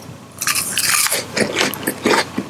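Close-miked biting and crunching into a matcha-coated chocolate cookie bar (Matcha no Thunder): a quick run of crisp crunches starting about half a second in, with a short pause a little past the middle.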